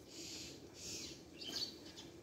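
Faint bird chirps and twitters in the background, a few short calls.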